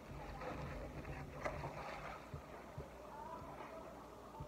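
Faint chewing and mouth sounds of someone eating a burger and fries, with a short click about one and a half seconds in.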